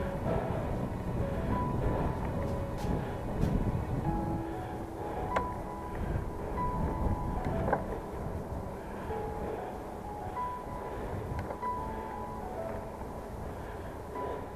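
Wind rumbling on a chest-mounted camera microphone, along with tyre noise, as a bicycle climbs a lane. Short, faint steady tones come and go throughout.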